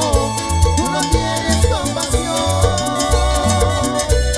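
Live salsa band playing an instrumental passage with a steady percussion beat, bass and sustained instrument lines, no voice singing.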